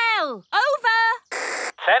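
A cartoon voice falling in pitch, then a short burst of walkie-talkie static about a second and a half in, just before a voice comes over the radio near the end.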